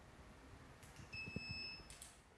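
Portable X-ray system giving a single electronic beep, held for a little under a second and starting just after a second in, with a few faint clicks around it.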